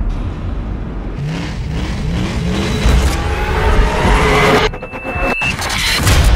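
Car engine revving in a few short rising blips over a steady low rumble, with music underneath.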